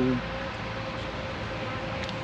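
A spoken word ends at the very start, then steady outdoor background noise with a faint constant hum.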